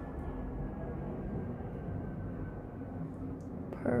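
Steady low room noise, an even hum and hiss with a faint thin tone and no distinct events.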